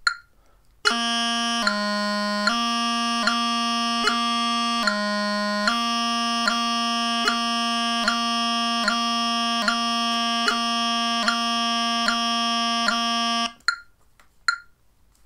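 Highland bagpipe practice chanter playing a tapping grace-note exercise on A: a G grace note, down to low G and back up to A twice, then repeated taps down to low G at even spacing. Each grace note and tap lands on a phone metronome's click at 75 beats a minute.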